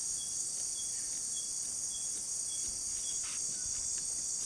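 Rainforest insect chorus: a steady, high-pitched shrill drone, with a short high note repeating a little under twice a second.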